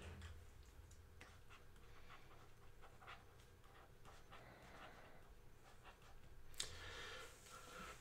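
Near silence, with faint scattered taps and scratches of a stylus handwriting on a tablet screen, and a short soft hiss near the end.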